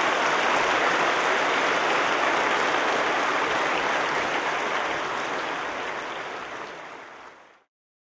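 Audience applauding, dying down toward the end and then cutting off suddenly.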